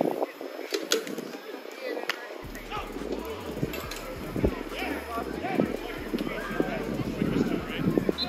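Indistinct voices of people talking in the background, with a few sharp smacks.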